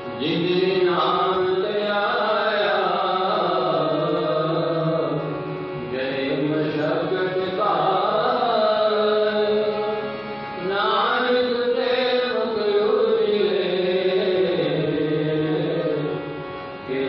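Sikh devotional chanting (kirtan) with music: a voice sings three long phrases, a new one starting about every five seconds, over steady held instrumental tones.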